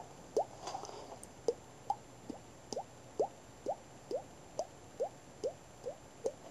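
Cheek-popping: a finger flicking a cheek with the mouth held open, making a run of hollow pops like water drips. There are about two a second, and each one rises in pitch.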